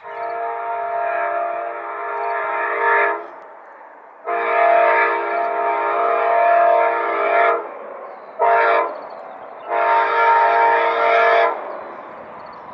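Amtrak P42DC diesel locomotive's air horn sounding a chord of several steady tones in the standard grade-crossing signal: two long blasts, one short and one long. This is the warning sounded as a train approaches a road crossing.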